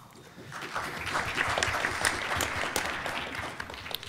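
Audience applauding: the clapping builds about half a second in and tapers off near the end.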